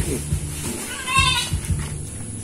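A goat bleating once, a short wavering call about a second in.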